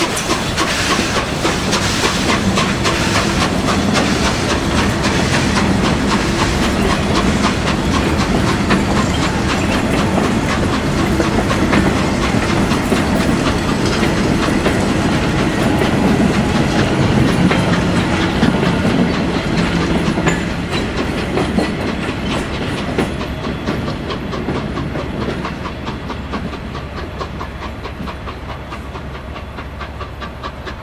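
Steam locomotive hauling a train of passenger coaches out of a station: hissing steam and the clatter of the coaches' wheels over the rails. The sound fades from about two-thirds of the way through as the train draws away.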